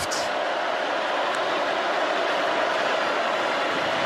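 Large stadium crowd making a steady wash of crowd noise, with no single voice standing out.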